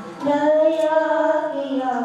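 High voices singing a slow melody in long held notes, with a new phrase starting about a quarter second in.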